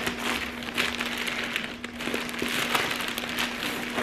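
Plastic mailer bag and the plastic bags of clothes inside it crinkling and rustling as they are handled and pulled out, with irregular crackles.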